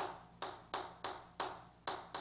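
Chalk writing on a chalkboard: about six sharp taps as the chalk strikes the board, each fading quickly, at an uneven pace.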